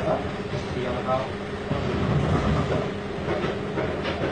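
Restaurant kitchen background noise: a steady mechanical hum with a few faint voices talking in the background.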